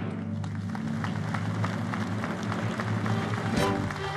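Live instrumental music: a steady run of short hand-drum strikes over low sustained bass notes, with a louder hit near the end.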